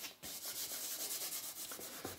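Charcoal being stroked and rubbed on drawing paper in rapid back-and-forth strokes, several a second, with a brief pause just after the start.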